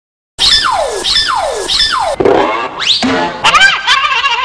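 Comic sound effects in a music intro: after a brief silence, three whistle-like tones each slide quickly down in pitch, then one long tone slides up, followed by a jumble of effects near the end.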